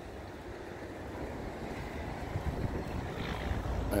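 Wind buffeting the microphone over a steady outdoor noise by the water, with an uneven low rumble that slowly grows louder.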